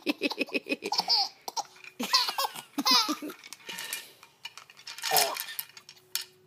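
Baby laughing while being tickled on the belly: a quick run of short laugh pulses at first, then high squealing laughs and one more burst near the end.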